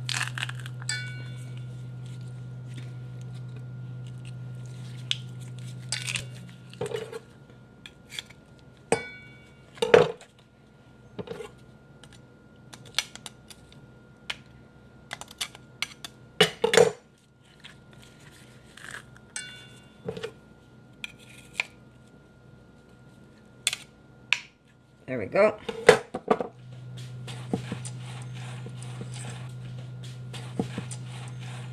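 Metal garlic press clicking and knocking against a stainless steel bowl as garlic cloves are pressed and scraped off, with sharp clinks scattered throughout and the loudest cluster near the end. A steady low hum runs under the first several seconds and comes back near the end.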